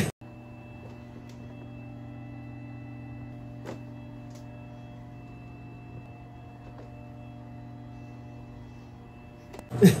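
A steady low hum made of several held tones, with a thin high whine above it and two faint clicks a little under four seconds in.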